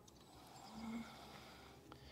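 Near silence, with one brief faint low hum a little under a second in.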